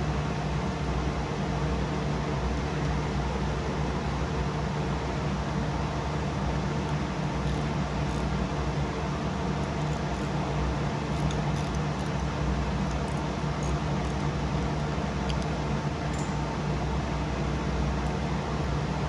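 Steady mechanical hum with an even rushing noise, as of a running fan, with a few faint light clicks now and then.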